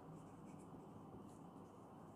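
Faint scratching of a pen writing on paper, a few short strokes over quiet room tone.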